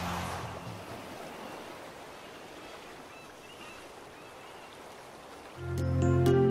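Cartoon title music dies away into a soft, steady wash of sea waves, and a bright music sting with sharp clicks starts just before the end.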